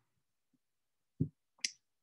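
Near silence, broken by two brief faint sounds: a short low one a little over a second in, and a sharp high click just after it.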